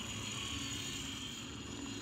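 Faint, steady whine of a motor-on-axle RC rock crawler's electric motors and gears as it crawls slowly up a rock face.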